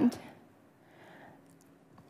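A woman's spoken word trailing off, then a pause of near silence with faint room tone and a steady low hum.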